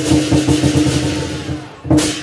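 Lion dance percussion: a drum beating quick strokes under cymbals, with a steady ringing tone. A cymbal crash at the start rings and fades away, and a fresh loud crash comes just before the end.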